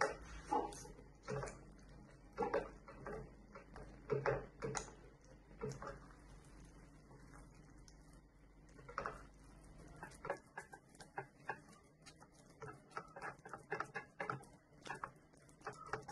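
Silicone spatula stirring and mashing thick cooked cornmeal dough in a frying pan: faint, irregular soft knocks and scrapes against the pan, coming quicker as small ticks in the last few seconds.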